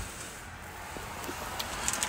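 Quiet, steady low hum of background noise with no distinct event.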